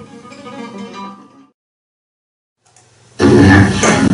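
Flamenco guitar played by hand: a few plucked notes ring and fade out about a second and a half in, followed by a brief silence. A loud, noisy sound cuts in about three seconds in.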